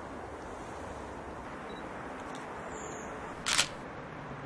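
Pentax K-5 II DSLR shutter firing once: a single short mirror-and-shutter click about three and a half seconds in, over a faint steady background hiss.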